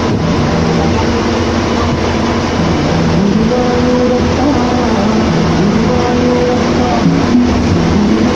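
Steady engine and road noise inside a bus running at highway speed, with a melody of held notes playing over it.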